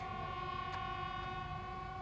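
Brass band holding one long, steady chord after a short melodic phrase.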